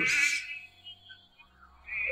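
A pause in a man's spoken prayer: the last of his words trails off in the first half second, then there is near silence for over a second. A steady high background tone comes back just before the end.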